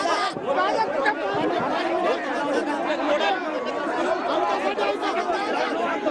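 Many men's voices talking and shouting over one another at once, a dense, agitated hubbub with no single clear speaker.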